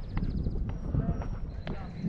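Footsteps tapping on driftwood logs and rock: a few separate clicks over a low rumble of wind on the microphone.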